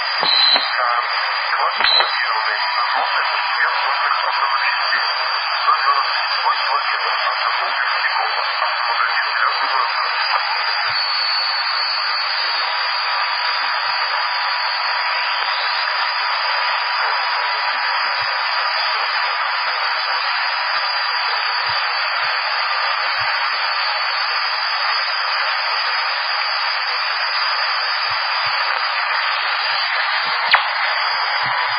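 CB radio receiver hiss and static, with faint, garbled voices of weak stations coming through it during a propagation opening. A thin steady whistle from an interfering carrier sits under the noise.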